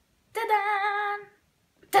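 A girl's voice singing one drawn-out note with a wavering pitch for about a second, then breaking into a sung 'ta-da' right at the end.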